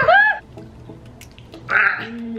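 A short wordless vocal sound whose pitch rises then falls, then faint small clicks and a brief breathy noise near the end.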